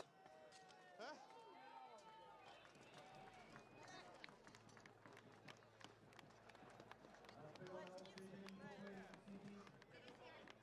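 Faint armoured combat: scattered sharp clanks of steel weapons striking plate armour and shields, under distant voices and shouts.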